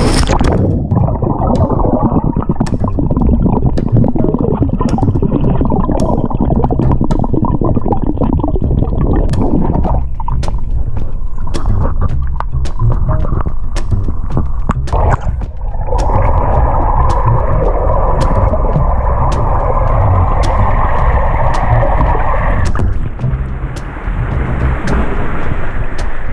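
Muffled rush and gurgle of churned pool water and bubbles, as picked up by a camera under the water while a swimmer kicks with short swim fins, with scattered sharp clicks and a brighter bubbling stretch a little after the middle.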